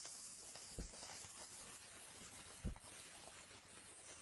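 Near silence: a faint steady hiss, with two soft low thumps, about a second in and again a little after two and a half seconds.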